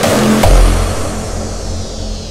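Hardstyle electronic dance music: one last heavy kick about half a second in, then a held deep bass note under a high sweep falling in pitch, as the track fades down.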